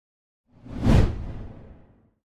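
Whoosh sound effect for an animated title reveal: one swelling swoosh with a low rumble under it. It peaks about a second in and fades away over the next second.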